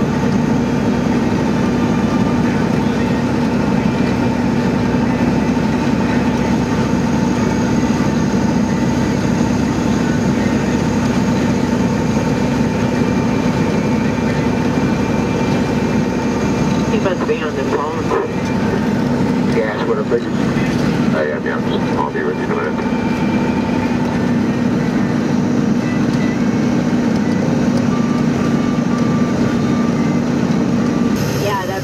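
Steady engine and road drone heard inside a vehicle's cab cruising at highway speed, with a constant low hum.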